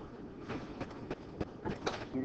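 Quiet classroom room sound with a few faint, short clicks and knocks.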